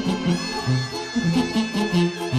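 Live banda-style brass band playing: sousaphone bass notes stepping beneath sustained clarinet and brass melody lines that swell in just after the start.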